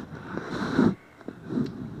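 Handling noise: rubbing and shuffling as a plastic storage container and the phone are moved about on a desk. The noise builds through the first second, stops suddenly, then comes back fainter.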